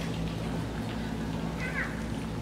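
A child's brief high squeak with a bending pitch, about three-quarters of the way through, over a steady low hum in the hall.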